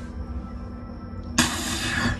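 Toilet flushing: a sharp click and then a sudden loud rush of water starting about one and a half seconds in.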